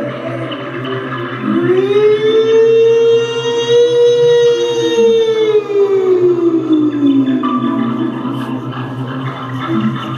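Live electronic stage music: over a low steady drone, one long gliding tone slides up, holds, and slides slowly back down.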